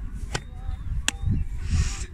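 Oyster 2 pram seat's recline mechanism clicking as the backrest is moved to the next position. There are two sharp clicks, about three quarters of a second apart, over a low rumble.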